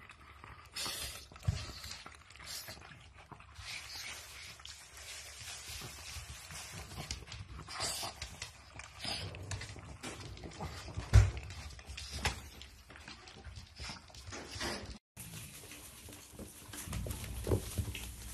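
A pug with its face in a bowl, snuffling, with irregular clicks and knocks against the bowl and one louder knock about eleven seconds in. Near the end the sound cuts to a steadier hiss with a few light taps.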